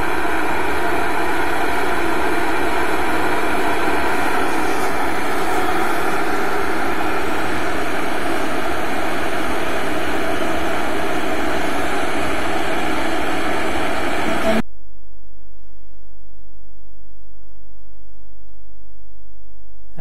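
Pigeon 1.5-litre stainless steel electric kettle heating water towards the boil: a loud, even hiss from the heating water. About fifteen seconds in, the hiss cuts off suddenly, leaving a steady electrical hum.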